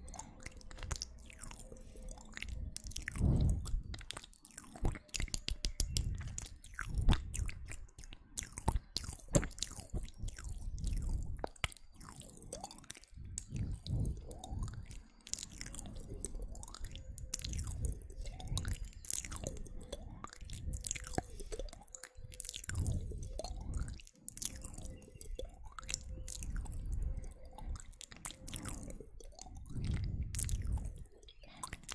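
Close-miked ASMR mouth sounds: a continuous, irregular stream of wet clicks, smacks and pops from lips and tongue right at the microphone, with occasional louder low puffs.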